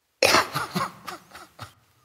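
A man's choked outburst: one loud burst followed by several weaker catches that die away within about a second and a half.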